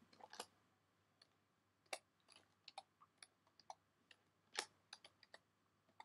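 Faint computer keyboard typing: single keystrokes at an unhurried, uneven pace, with short pauses between them.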